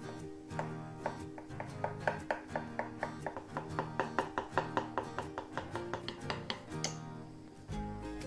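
Metal spoon clinking and scraping against a glass bowl as it stirs, in a fast, even run of about five strikes a second that stops near the end, over background guitar music.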